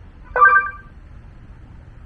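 A single short electronic beep from the drone's controller app as video recording starts, about half a second long, with a steady pitch.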